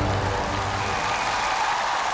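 Studio audience applauding over the show's theme music, which holds sustained chords whose bass fades away in the second half.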